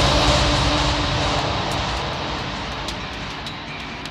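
Neurofunk drum and bass mix at a breakdown: a dense noise wash with low bass rumble fades steadily away, and sparse sharp clicks come in during the second half.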